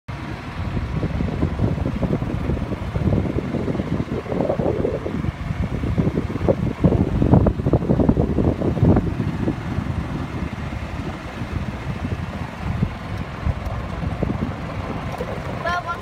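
Wind buffeting the microphone on a moving golf cart: a low, gusting rumble that swells and is loudest about halfway through. A brief voice comes in just before the end.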